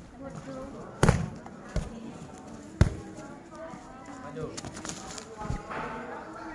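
Sharp smacks of kicks landing on a hand-held kick shield: two loud strikes, about a second in and just before three seconds, a lighter one between them and another near the end, over a background of voices.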